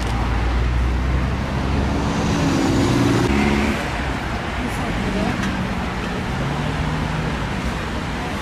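Road traffic noise: a steady low engine rumble with vehicles going by, loudest about two to four seconds in.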